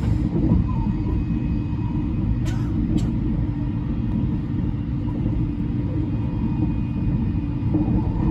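Running noise inside the passenger cabin of the Thunderbird limited express electric train at speed: a steady low rumble of wheels on rail, with two short clicks about half a second apart a little over two seconds in.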